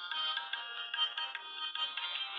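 Instrumental background music: a bright melody over a steady beat, thin-sounding with no bass.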